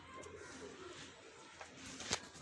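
Domestic pigeons cooing, a low warbling coo.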